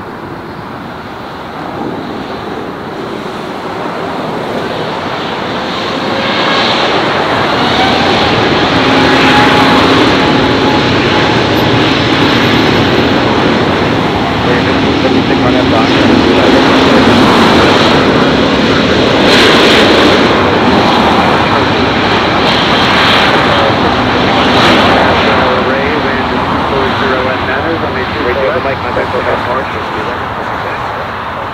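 Jet engines of an ITA Airways Airbus A350 spooling up for takeoff. The roar builds over the first several seconds, then holds loud with steady engine tones as the aircraft rolls down the runway, and eases a little near the end.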